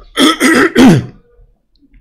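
A man clearing his throat: a few short, rough rasps in the first second.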